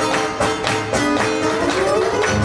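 Strummed acoustic guitar with steady rhythmic hand clapping keeping the beat of a gospel spiritual, in an instrumental gap between sung lines.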